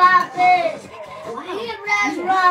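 A child's high voice singing a melody, with gliding held notes.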